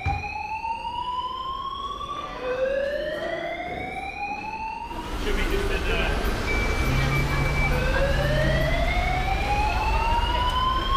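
Building fire alarm sounding its evacuation tone, a slow rising whoop repeating about every four and a half seconds. From about halfway a steady street rumble comes up under it.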